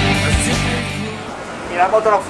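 Rock background music with a drum beat, fading out about a second in. A man's voice starts speaking near the end.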